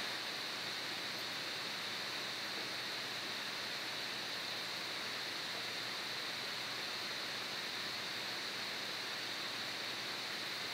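Steady hiss of a recording's background noise, with a slightly brighter high band and no other sound in it.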